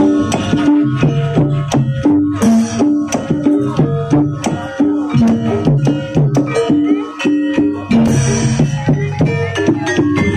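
Live Javanese gamelan music for a Barongan Blora dance: hand-played kendang drum strokes over a steady, repeating pattern of struck metal pitched notes.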